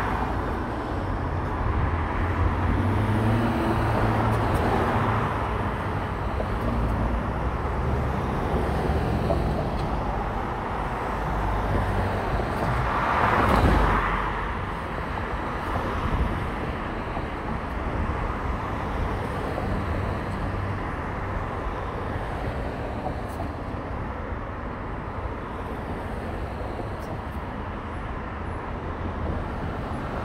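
Car driving through city traffic: steady low road and engine rumble with surrounding traffic noise, and a louder swell of a vehicle passing about halfway through.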